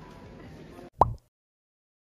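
Faint background music and shop ambience that cut off abruptly, followed about a second in by a short, loud sound effect that rises in pitch, marking the cut to the end card, then dead silence.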